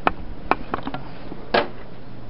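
A handful of sharp clicks and knocks, the last one a longer crunch, over a steady wind-like rush.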